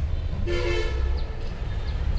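A vehicle horn sounds once, a steady multi-tone blast of under a second starting about half a second in, over a continuous low rumble of road traffic.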